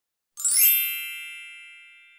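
A bright, bell-like chime sound effect of an intro logo, struck once and ringing with several high tones that fade away slowly.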